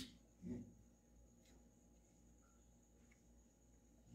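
Near silence: room tone with a faint steady hum, and one brief faint sound about half a second in.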